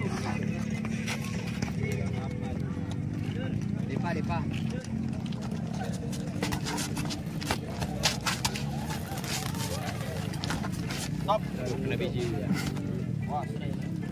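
Boxing gloves landing punches in quick exchanges, a dense run of sharp slaps in the middle, over spectators' voices and a steady low hum.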